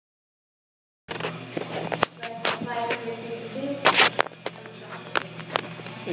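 Silence for about a second, then the sound of an indoor RC racing hall cuts in: indistinct voices, several sharp clicks and knocks, and a steady low hum.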